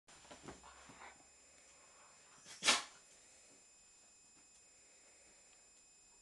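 A dog squirming on its back on a leather sofa, with soft rustles of its body on the leather in the first second. About two and a half seconds in comes one loud, short, sharp blast of breath through the dog's nose.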